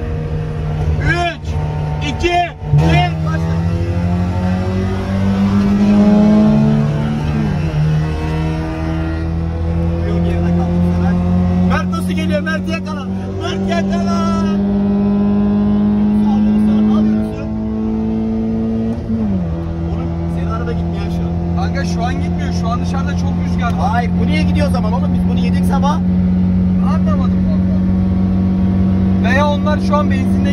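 Car engines droning at motorway speed, heard from inside a 1990s Honda Civic's cabin. The engine note climbs and drops a couple of times as the throttle changes, over road and wind noise.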